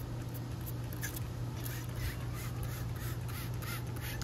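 Trigger spray bottle of wash-and-wax cleaner squirted repeatedly onto a camper's fiberglass side wall, a rapid run of short spray hisses at about three a second.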